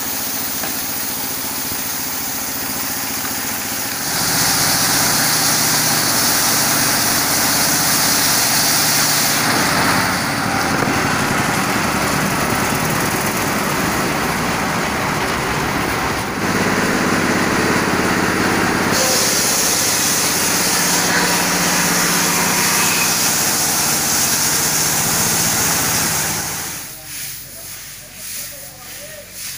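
Engine-driven sawmill machinery running steadily at a woodworking shed, with two long stretches of a louder, higher hiss as a timber beam is pushed through and cut. The sound cuts off near the end.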